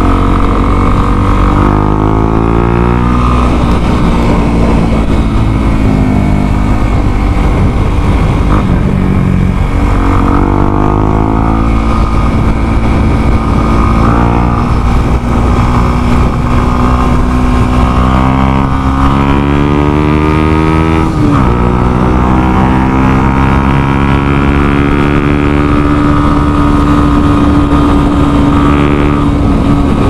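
Motorcycle engine under way: the revs climb and fall back at each gear change, with the clearest drop about two-thirds through, then settle into a steady cruise.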